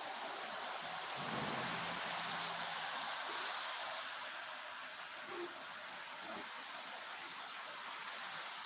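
Steady outdoor hiss in snowfall. A low hum comes in a little after a second and lasts about a second and a half, and a single short, low hoot-like note sounds about five seconds in.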